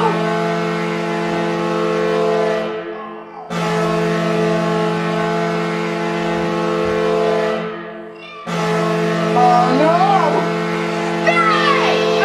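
NHL-style arena goal horn sounding in long, loud blasts, three in a row with a short drop between each, signalling a goal scored. Excited kids' shouting comes in over the horn near the end.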